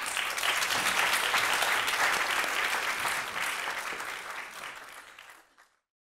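Audience applauding, a dense patter of many hands clapping that dies away over the last couple of seconds.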